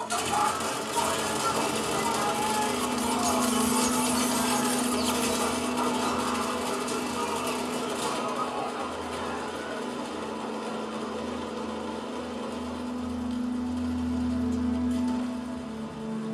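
Film soundtrack played through a television: a dense, noisy action scene with music and a steady low drone underneath, loudest in the first half, with a man shouting 'Open the door!' partway through.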